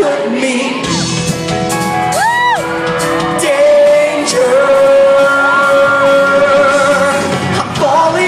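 Live pop-rock band and male lead singer performing, heard from within the crowd in a reverberant hall, with a long held sung note in the second half. Fans scream and whoop over the music.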